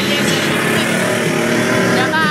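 Race pickup truck engines running on a snow track.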